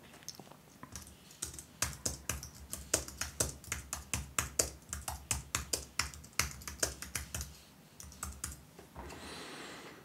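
Typing on a computer keyboard: a quick run of keystrokes, several a second, that tails off about eight seconds in.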